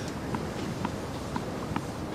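Murmur of a tennis stadium crowd between points, with a string of faint, quick clicks about three or four times a second.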